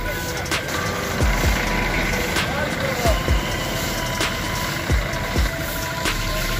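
A water tanker truck's engine running steadily, with stiff brooms scraping the wet road surface in repeated short strokes.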